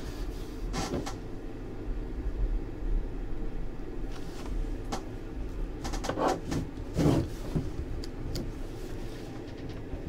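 A steady low hum with a few short knocks and handling noises scattered through it. The loudest comes about seven seconds in.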